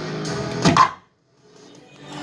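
Godzilla pinball machine's music and sound effects as the high-score initials are confirmed, peaking in a brief loud burst and then cutting off suddenly about a second in; a faint sound follows.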